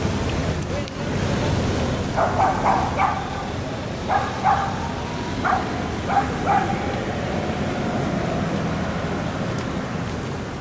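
Steady outdoor rumble of wind and street noise, with a run of about nine short, sharp calls, mostly in quick pairs, from about two seconds in to past the middle.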